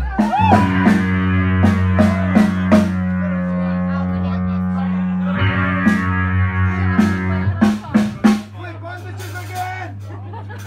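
Rock band playing live: a loud sustained electric guitar and bass chord rings out with drum and cymbal hits, restruck about halfway through, like a song's closing chord. After a few final hits near the end, a low steady amplifier hum is left.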